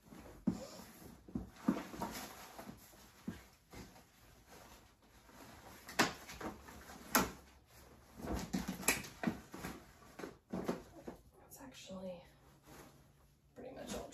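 Dress-up costumes and fabric rustling as they are handled and stuffed into a plastic storage tub, with irregular knocks and clicks, the sharpest about six and seven seconds in.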